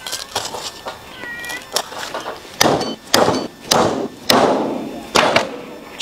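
Meat cleaver chopping through lamb ribs on a wooden chopping block: a string of sharp chops, the heaviest in the second half. A short cat meow just over a second in.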